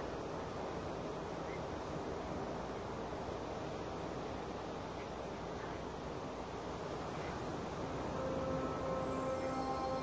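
Steady wash of ocean surf. About eight seconds in, a sustained synthesizer chord from the Roland System-1 fades in, with a high falling sweep just after.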